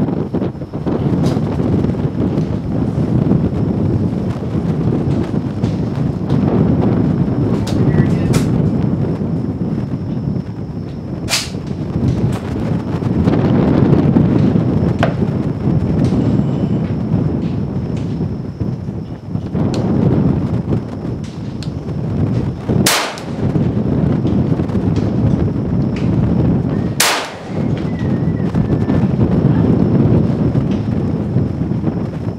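Rifle shots from an AR-15 firing .223 rounds: three sharp, loud cracks, one about eleven seconds in and two about four seconds apart near the end, with a few fainter shots earlier. A loud, continuous, low rumbling noise runs under them.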